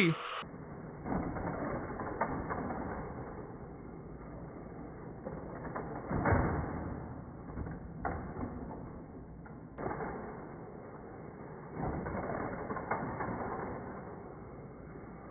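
Muffled whirring and rattling of a Hot Wheels Criss Cross Crash motorized toy track running, with a few louder swells as the plastic mechanisms work.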